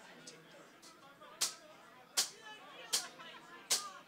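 Drummer's count-in: four sharp, evenly spaced clicks about three-quarters of a second apart, counting the band into the next song, over a faint crowd murmur.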